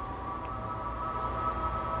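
Steady quiet background hum with a faint thin high whine, in a pause between spoken sentences.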